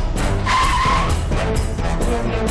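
A car pulling up and braking, with a short tyre screech about half a second in.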